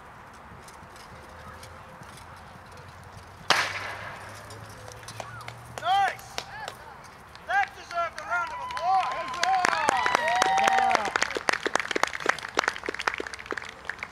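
A single sharp crack about three and a half seconds in, then spectators shouting short calls that build into loud overlapping cheering with clapping in the second half.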